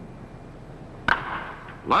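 Wooden baseball bat cracking against a pitched ball about a second in: one sharp crack with a short fading tail, a solid hit that goes for a line drive. A steady background hiss runs underneath.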